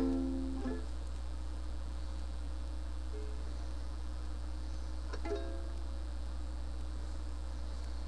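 Ukulele chord ringing out and fading, then a single strummed ukulele chord about five seconds in that rings and dies away, over a steady low hum.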